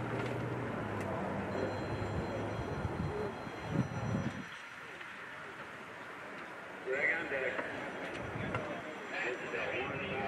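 Indistinct voices of people talking in the background, not clear enough to make out words, over a steady low hum that fades out about three seconds in. A few dull thuds come just before the four-second mark, and the talking rises again about seven seconds in and near the end.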